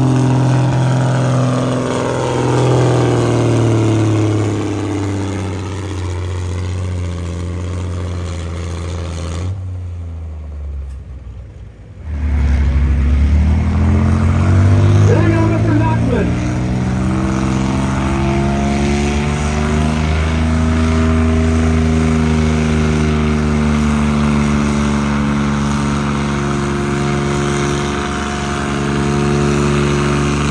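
A pulling vehicle's engine running hard under load, its pitch slowly falling over several seconds. After a brief break, an engine revs up sharply and then holds a steady, loud note.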